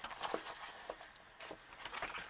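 Quiet rustling and a few soft clicks of a frosted plastic stamp-set sleeve being handled and slid open.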